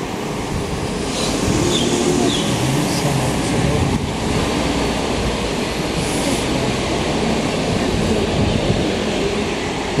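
Steady city street noise from traffic on the adjacent road, with faint voices in the background.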